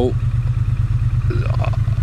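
Triumph Bonneville T100 parallel-twin engine running steadily at low revs as the motorcycle creeps along in slow traffic.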